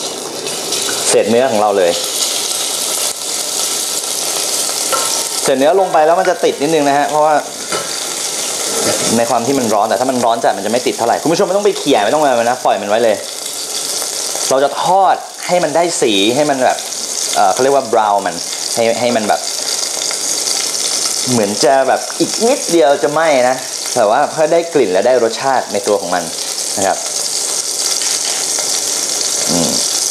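Cubes of beef sizzling as they fry in hot oil in a stainless steel saucepan. The sizzle starts about a second in and is loudest over the next few seconds, then carries on steadily.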